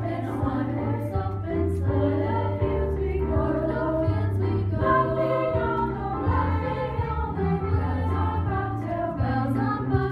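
A girls' choir singing a song together in parts, over low sustained bass notes that change about once a second.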